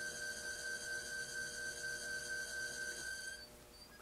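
Electric pottery wheel's motor giving a steady high-pitched whine while the plate spins, cutting out shortly before the end as the wheel is stopped.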